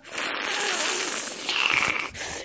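Steady rushing, wind-like noise standing in for the tornado, with a faint whistling tone near the end.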